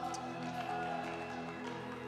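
Live worship band playing soft background music: steady, sustained chords held without a beat.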